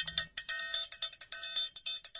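Small metal bells ringing in a quick, uneven run of strikes, about six a second, as a closing sound effect.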